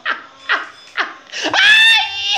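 Laughing in short bursts about every half second, then a high-pitched squeal held for about half a second near the end, the loudest sound.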